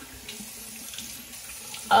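Bathroom sink tap running steadily, with water splashing as a freshly shaved face is rinsed.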